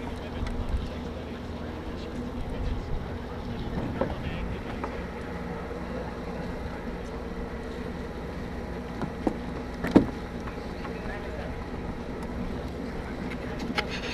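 Wind rumbling on the microphone over the wash of the sea, with a sharp knock about ten seconds in and a few lighter taps.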